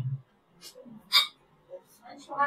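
A woman's voice trailing off at the end of a phrase, then short breath sounds close to the microphone, with one sharp intake of breath about a second in.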